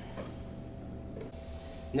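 Faint handling of laminated particleboard panels: a soft knock shortly after the start and a light sliding hiss near the end as the boards are stacked on carpet, over a steady low hum.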